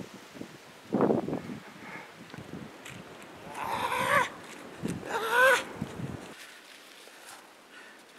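A man's wordless cries and groans, two drawn-out yells around the middle, with dull thumps in the first second or so.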